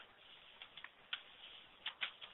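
About five faint, irregular clicks from the presenter's computer while a slide is advanced, the sharpest near the start and near the end, over a low background hiss.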